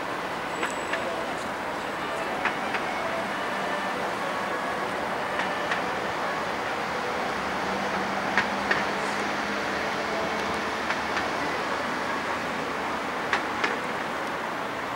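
Steady road-traffic noise heard from a road bridge, with a few short, sharp clicks scattered through it, the loudest near the middle and near the end.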